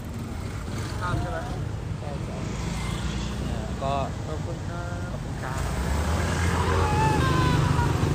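Street traffic: a steady low rumble of passing vehicles, growing louder in the second half as traffic comes closer.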